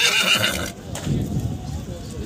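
A horse whinnying: a loud, wavering high call that breaks off under a second in.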